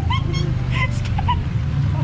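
A person's short, high-pitched squeals and whimpers, several a second, a ticklish reaction to small spa fish nibbling at bare feet in the tank, over a steady low hum.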